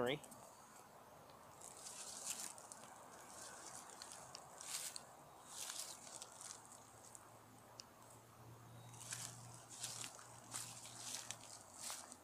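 Quiet outdoor ambience: short, soft rustling hisses every second or so, with a low steady hum of distant road traffic in the second half.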